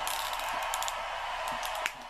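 A few light clicks and taps of plastic wrestling action figures being handled and set against a toy ring, over a steady hiss.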